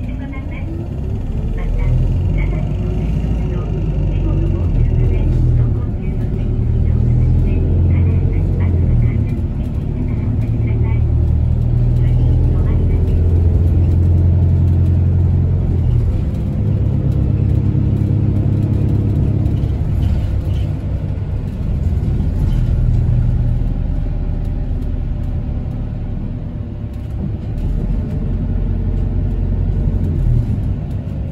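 City bus engine and road noise heard from inside the passenger cabin as the bus drives along, with a rising whine in the first couple of seconds as it gathers speed and the engine note stepping up and down through the rest.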